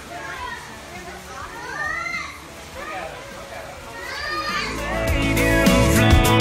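Children's high-pitched voices calling out. About four and a half seconds in, music fades in and is loud by the end.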